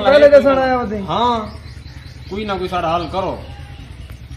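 Men's voices in conversation, with birds chirping in the background.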